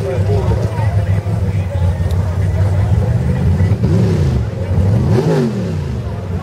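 Engine of a pulling vehicle running with a steady low drone, revved up and back down twice in the last two seconds, with crowd voices over it.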